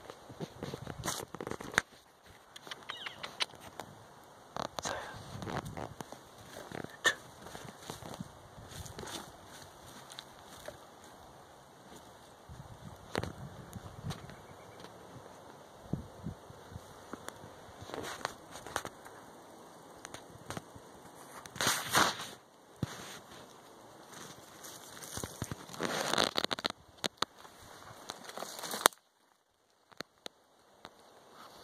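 A bobcat digging with its paws in rotten stump wood and loose soil: irregular scratching, scraping and crackling of wood debris, with louder bursts of scraping about two-thirds of the way in and again a few seconds later.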